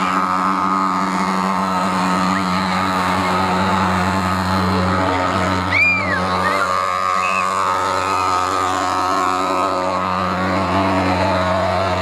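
Portable pulse-jet thermal fogging machine running, spraying kerosene-based insecticide fog against mosquitoes: a loud, steady drone that holds one pitch throughout.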